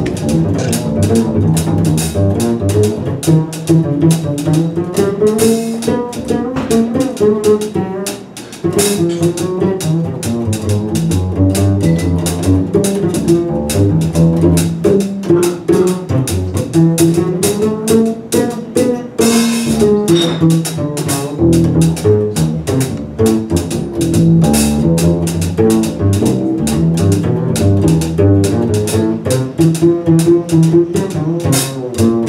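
Live small-group jazz with the upright bass played pizzicato at the front of the sound, walking a moving line, over steady cymbal time from the drum kit and quieter jazz guitar.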